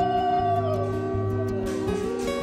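Background music: an instrumental tune with a held melody that slides down and back up over sustained chords and a changing bass line.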